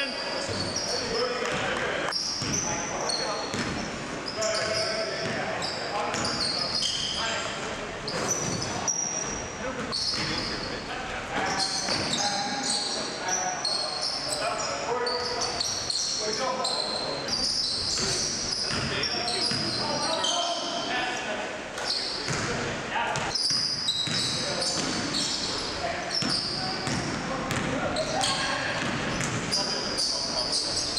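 Live basketball game in a hall: the ball bouncing on the hardwood floor, sneakers making many short high squeaks, and players calling out, all echoing in the gym.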